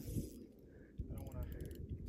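Fishing reel drag clicking faintly in two short runs of rapid clicks as a hooked fish pulls line off the reel.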